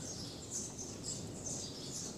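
Faint, short high-pitched chirps of small birds, repeating irregularly several times a second over low background noise.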